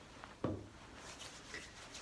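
A single dull knock about half a second in, with faint rustling and light ticks of a disposable isolation gown and hands moving after it.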